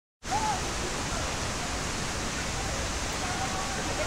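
A forest stream rushing, a steady, even wash of water noise that cuts in abruptly just after the start.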